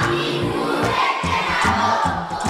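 Many girls' voices chanting together in unison over backing music with a steady bass line.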